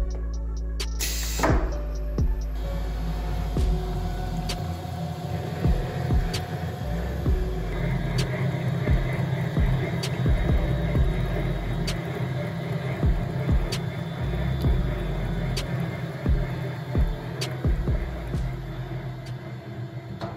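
Background music with a regular beat about every two seconds, over the steady low hum of a cerium oxide glass-polishing machine running, its pad spinning and slurry pump circulating.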